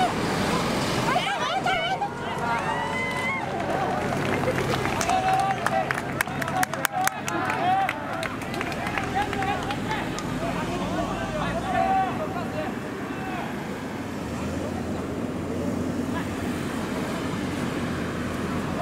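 Several voices shouting and calling out across an outdoor soccer pitch, players yelling to one another during a match, with a quick run of sharp clicks about six to seven seconds in.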